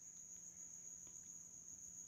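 Near silence: room tone with a faint, steady high-pitched whine or chirr in the background.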